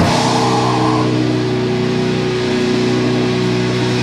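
Sludge/doom metal recording: a heavily distorted guitar chord and a cymbal crash hit together at the start and are left to ring out.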